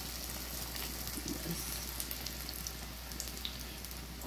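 Batter-coated vegetable slices deep-frying in a wok of hot oil: a steady sizzle with fine crackling.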